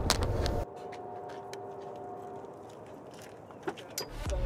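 Outdoor parking-lot ambience with a few light footsteps and clicks. A low rumble cuts off abruptly under a second in, leaving a quieter background with a faint steady hum.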